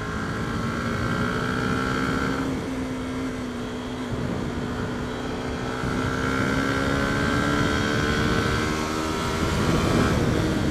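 Small single-cylinder motorcycle engine running under throttle as the bike gathers speed. Its note climbs slowly, drops about two and a half seconds in, then climbs again and dips once more near the end.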